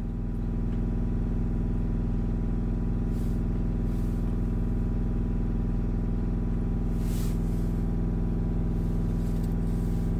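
Chevrolet Cruze 1.7 four-cylinder turbodiesel held at a steady 2,500 rpm, a constant even drone, warming toward operating temperature to clear a freshly chemically cleaned diesel particulate filter. Faint brief hisses come about three and seven seconds in.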